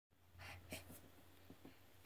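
Near silence: room tone with a few faint, brief soft noises in the first second and two faint ticks near the end.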